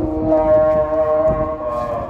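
A long, steady held pitched sound with many overtones, its pitch shifting slightly and fading near the end.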